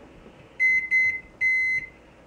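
Microwave oven keypad beeping as its buttons are pressed to set it running: a quick run of high beeps, one held longer about a second and a half in.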